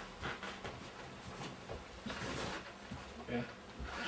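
Soft murmur of voices and rustling of hands and clothing in a small room, with a brief faint voice about three seconds in.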